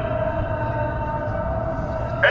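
One long, steady held note of a man's chanted Islamic religious recitation in a Middle Eastern melodic style, with a low rumble underneath.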